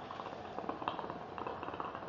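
Small hookah bubbling as smoke is drawn through the water in its base: an irregular gurgle that dies away near the end.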